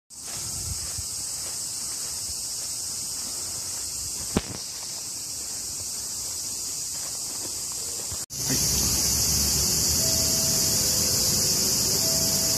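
Cicadas in trees droning in a steady, high, even chorus. The sound drops out for an instant about eight seconds in and comes back louder, now with a low rumble beneath it; there is one brief click about four seconds in.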